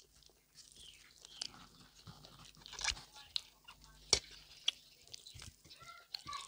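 Close-up eating sounds of pork belly and rice eaten by hand: wet chewing and mouth noises broken by short, sharp clicks and crunches, the loudest a little past four seconds in.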